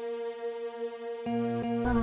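Slow background music of long held notes; new notes come in over the last second, ending on a fuller chord with a low bass.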